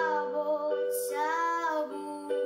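A young girl singing over sustained chords that she plays on an electronic keyboard. Two long held sung notes are split by a brief hissing consonant about halfway, while the keyboard chord holds steady underneath.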